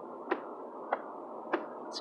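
Inside a moving car: steady road and engine noise with a sharp click repeating evenly about every 0.6 seconds.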